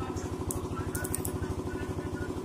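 A small engine running steadily with a fast, even pulse, like an idling motor. A few faint clicks come around the middle.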